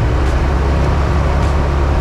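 Single-engine Tecnam light aircraft's piston engine and propeller running steadily, heard from inside the cockpit while the plane holds on its brakes at the runway threshold.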